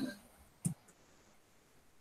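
A single short, sharp click a little over half a second in, followed by a much fainter tick, over near silence on a video-call line.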